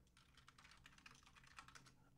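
Faint computer keyboard typing: many light, irregular clicks, otherwise near silence.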